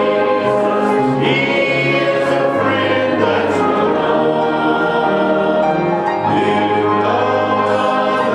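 Choral music: a choir singing held chords over a low bass line that moves to a new note every second or so.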